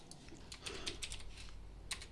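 Computer keyboard typing: a few faint keystrokes, then one sharper click near the end.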